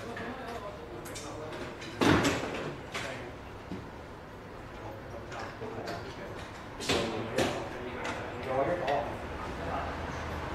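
Indistinct voices talking in a room, with a sudden loud knock about two seconds in and a couple of shorter sharp noises around seven seconds in.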